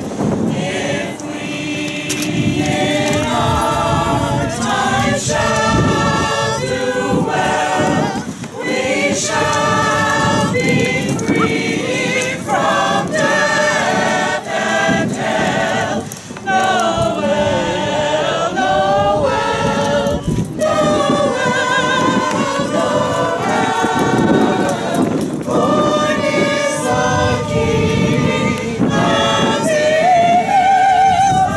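Mixed choir of adult men and women singing a Christmas carol together, held notes in phrases with short breaks between them.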